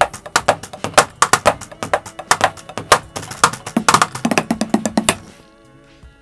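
Drum groove played on a Roland electronic drum kit, its sampled drum sounds struck in quick strokes several times a second. The drumming stops about five seconds in, leaving softer held musical tones.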